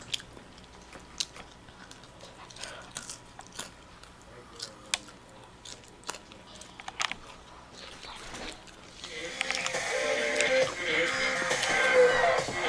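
Irregular sharp clicks and crunches, then music starts playing from a television about nine seconds in and gets louder.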